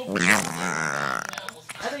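Shih tzu making a drawn-out, Chewbacca-like vocal sound: one long, pitched call of about a second and a half that breaks off near the end.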